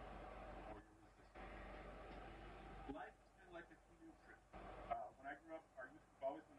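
Faint, indistinct speech, with stretches of steady hiss in the first half and short spoken phrases in the second half.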